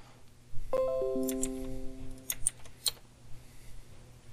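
A computer notification chime: several notes enter one after another, about a second in, and ring together for about a second and a half, as a Kaspersky Security Cloud 'Access denied' alert pops up. A few short clicks follow.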